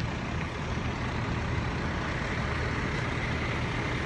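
Fire trucks running steadily: a constant low engine rumble with a hiss over it.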